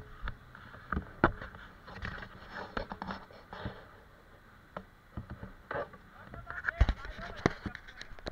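Irregular sharp knocks and clacks, thickest near the end, with indistinct voices in between.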